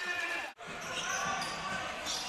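Indoor basketball game sound: a ball dribbling on a hardwood court under faint crowd and player voices, with a brief drop-out at an edit about half a second in.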